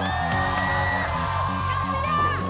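Background music with a steady low pulse, with a studio audience cheering and whooping over it.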